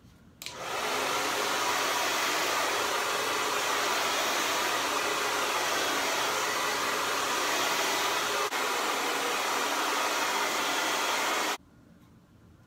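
Handheld hair dryer switched on and blowing steadily at the hairline of a lace wig to dry the styling glue under the lace. It comes on about half a second in, dips briefly once, and cuts off suddenly near the end.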